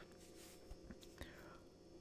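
Near silence: faint room tone with a few tiny ticks about halfway through.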